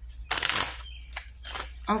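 Tarot cards being shuffled by hand: a short rustle about half a second in.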